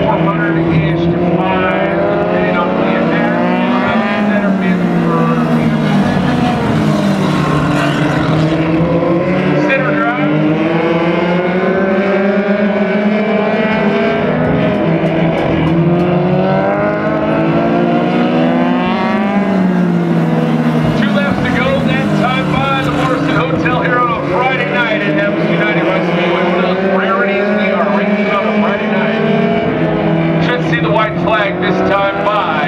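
Focus midget race cars, their Ford Focus four-cylinder engines running hard around an oval, with several heard at once. Each engine's pitch climbs and drops every few seconds as the cars accelerate, lift and pass.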